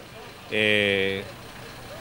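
A man's voice holding a hesitant 'ehh' at one steady pitch for under a second, between pauses in his speech.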